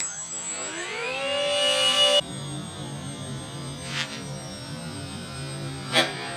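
Electric motors of a radio-controlled A-10 Warthog model winding up in a rising whine over about a second and a half, holding briefly, then cutting off abruptly about two seconds in. A low steady hum follows.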